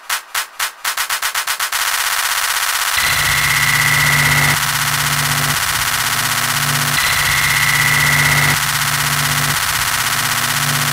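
Electronic music: a stuttering pulse speeds up into a fast roll, then breaks into a loud, noisy synth wash over held low bass tones. A high synth tone comes in twice over it.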